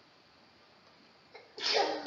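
Near silence, then a single short sneeze near the end.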